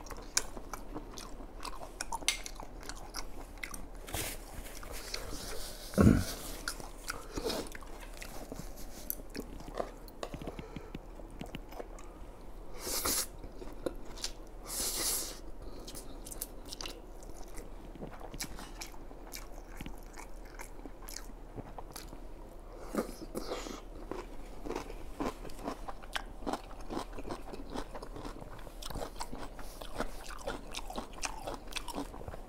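Close-miked mouth sounds of eating abalone and spicy instant noodles: steady wet chewing and biting with many small clicks. Two longer slurps come around the middle as noodles are sucked in, and there is a single dull thump about six seconds in.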